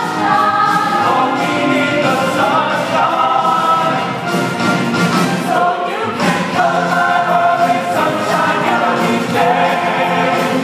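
Mixed-voice show choir singing a lively number together, men's and women's voices in harmony without a break.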